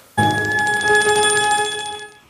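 A bell-like ringing tone with a fast, even trill, starting suddenly and held for about two seconds before cutting off.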